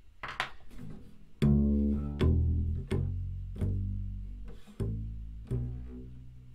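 Double bass plucked pizzicato, walking up six notes from the open D string: D, E, F-sharp, G, A, B, the lower octave of a D major scale. Each note rings and fades before the next, with a slightly longer pause before the A as the hand shifts to third position.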